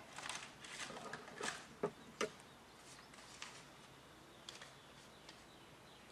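A few light clicks and taps in the first couple of seconds, with two fainter ones later, over a low steady room noise: small handling sounds at a workbench.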